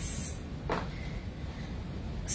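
A short, sharp hissing breath out, followed under a second later by a softer breath, from a person straining through dumbbell renegade rows.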